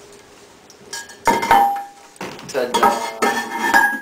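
Ceramic toilet tank lid being set back onto the cistern: loud porcelain-on-porcelain clinks and scrapes with a ringing tone, starting about a second in and going on in several rounds.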